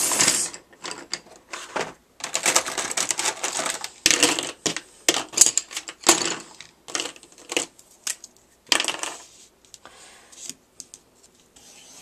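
A marker drawn along a wooden ruler across a paper plate: a run of short, irregular scratchy strokes.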